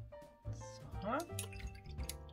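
Light background music with sustained melodic notes; about a second in, a short rising gliding tone.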